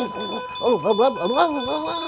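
A person's voice, drawn out and rising and falling without clear words, from about half a second in, over a steady high electronic tone.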